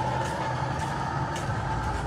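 A vehicle engine running steadily, a low even hum with background street noise.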